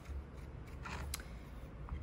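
Serrated rib scratching the rim of a soft clay pot, scoring it so a coil can be attached: a few faint, short scrapes about a second in, over a steady low hum.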